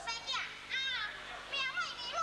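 High-pitched stage speech in Teochew: a voice speaking short phrases of dialogue with strongly rising and falling pitch.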